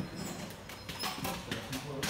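Faint, indistinct voices with scattered light clicks and knocks.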